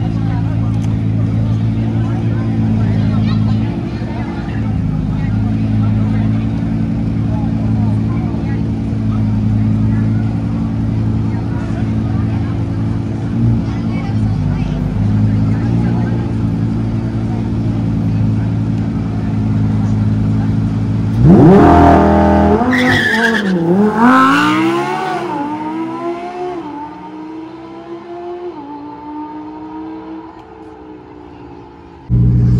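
Nissan GT-R and Lamborghini Huracán EVO V10 engines running steadily at the drag-strip start line, then launching hard about 21 seconds in. The revs climb suddenly with several quick upshifts, the pitch dropping and rising again each time, and the sound fades as the cars pull away down the strip.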